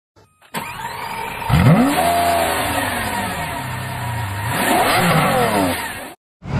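A high-performance car engine revving hard twice. The pitch climbs about a second and a half in and falls away slowly, then climbs and falls again near the end.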